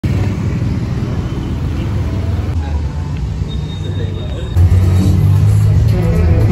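Busy nightlife street ambience: music from bars and clubs, crowd chatter, and passing motorbike and car traffic. A second past the middle it turns louder and bassier.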